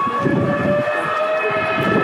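A sustained chord of several steady tones held together, over a background of outdoor noise.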